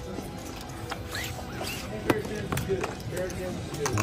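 Casino chips clicking a few times as they are stacked and pushed across a felt card table, over a murmur of other voices and background music.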